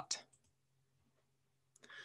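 Near silence after a word trails off, then a few faint clicks and a soft breath near the end.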